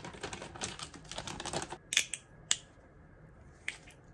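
Frozen mango chunks poured from a plastic bag into a glass mug: a quick clatter of hard frozen pieces dropping onto glass, mixed with the bag crinkling, for about the first two seconds. Then three separate sharp clicks.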